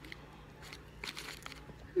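Faint chewing of a soft peanut butter cup, with a few quiet crackles about a second in from its paper liner being handled, over a low steady hum.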